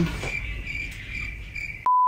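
Crickets chirping, the stock 'awkward silence' sound effect. Just before the end it cuts off into a short, steady, louder test-tone beep like the one played over TV colour bars.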